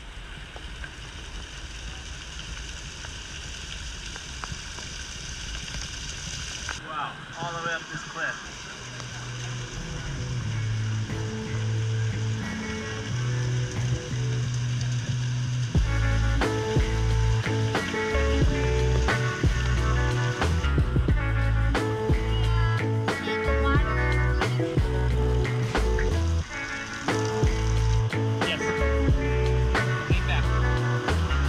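Hot spring water running down a rock face, a steady hiss, with a brief voice about seven seconds in. Background music then fades in, with a bass line from about ten seconds and a full beat from about sixteen seconds on.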